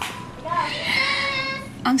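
A child's high-pitched voice holding one long, slightly wavering note for about a second, like a squeal or sung call.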